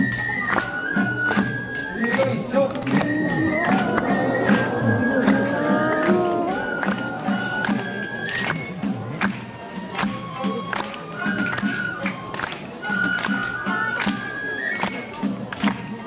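Live traditional Japanese festival music: a high flute melody moving in held steps over a steady drumbeat and sharp percussion strikes. Crowd voices swell between about three and six seconds in.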